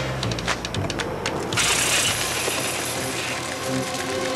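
Commercial soundtrack: a run of quick, irregular clicks, then a loud burst of hiss lasting about a second and a half, then music with held notes near the end.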